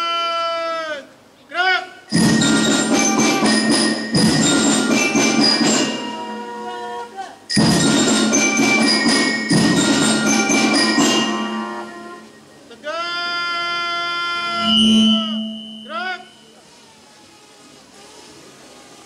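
A ceremony commander's drawn-out shouted command, the held 'hormat' salute call, ends about a second in. It is followed by about nine seconds of struck percussion with many ringing, bell-like notes in two phrases. Another long held command call comes near the end.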